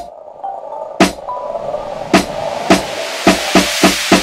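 Electronic song made in Ableton Live Lite: programmed drum hits over a hiss that builds up and grows louder. The hits come about a second apart at first, then faster near the end like a drum fill.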